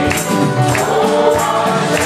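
Mixed group of men and women singing a gospel song together, backed by piano, electric guitar and drums, with percussion strikes keeping a steady beat.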